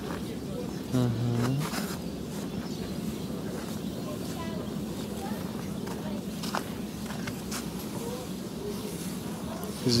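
A steady low drone, even and unbroken throughout, with a short spoken "uh-huh" about a second in.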